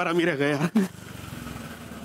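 A voice in the first second, then a motorcycle engine running steadily as the bike rides along, starting about a second in.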